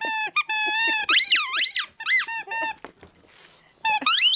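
A dog's rubber squeaky toy squeaked over and over as a miniature schnauzer chomps on it: a quick run of high squeals, some held on one pitch and some rising and falling, then a short pause near the end.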